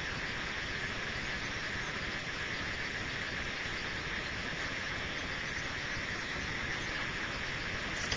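Steady, even background hiss with no other sound in it: the recording's noise floor between narrated lines, with no handling of the film rolls audible.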